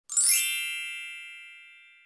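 A single bright, shimmering chime that swells in quickly and then rings out, fading away over about a second and a half: an intro sting for an animated title card.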